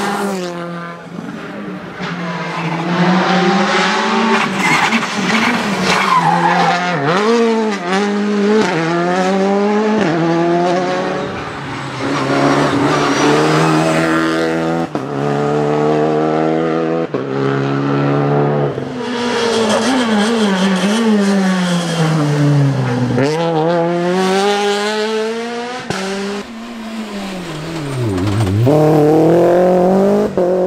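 Rally cars driven flat out on a stage, one after another: engines revving hard and climbing through the gears, each rise cut short by a shift. Twice near the end, the pitch swoops down and back up as a car passes close by.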